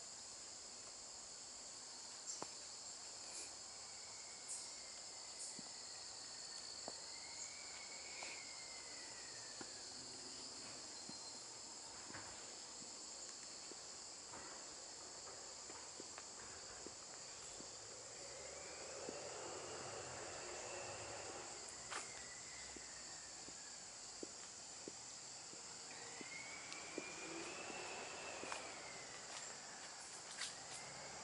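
Faint outdoor ambience led by a steady, high-pitched insect chorus, with light scattered clicks. Three slow swells of distant noise rise and fade through it.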